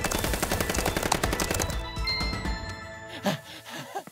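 Very rapid laptop keyboard typing, a dense clatter of keystrokes over background music, stopping abruptly about two seconds in. A couple of short vocal sounds with falling pitch follow near the end.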